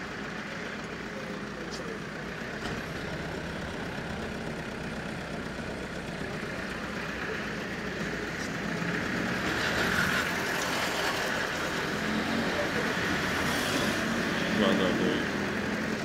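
Steady street traffic and car engine noise heard from inside a slowly moving car. Faint voices from the street come in near the end.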